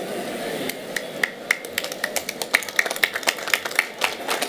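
Scattered clapping from a few audience members, irregular sharp claps at about four a second, starting about a second in.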